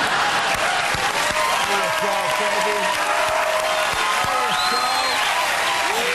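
Studio audience applauding and cheering, many voices mixed with steady clapping.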